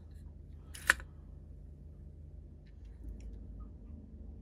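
A single sharp click about a second in, likely a plastic panel-mount indicator lamp being handled against its plastic cover plate, over a low steady hum, with a few faint ticks later.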